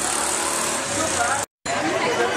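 Busy city street noise: motor traffic running and passers-by talking. It drops out for a split second about one and a half seconds in, then resumes.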